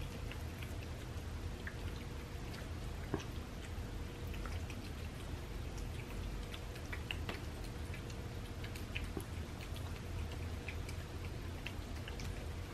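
Several cats eating soft homemade raw food from paper plates: faint, scattered small clicks of chewing and licking over a low steady hum. The food is ground, with bone meal instead of bones, so there is no crunching.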